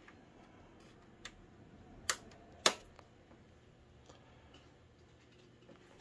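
Two sharp clicks about half a second apart, a couple of seconds in, after a fainter click about a second in: the power and standby toggle switches of a 1967 Fender Blackface Bandmaster amp head being flipped. The amp gives no hum or sound in reply, because its fuse has been taken out.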